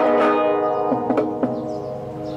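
Classical guitar played fingerstyle: the notes of a chord ring on and slowly fade, with a few short string clicks about a second in.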